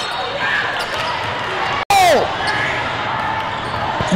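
Busy basketball hall ambience: basketballs bouncing on hardwood amid steady crowd chatter across many courts. About two seconds in, the audio drops out for a split second, then a voice gives a short falling "oh".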